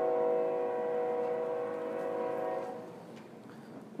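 Train horn sounding one long held chord of several steady tones, fading out about three seconds in.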